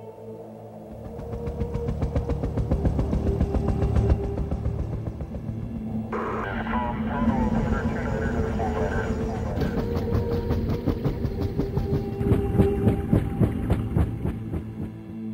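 Helicopter rotor chopping in a fast, even pulse, over a music bed of steady low droning tones.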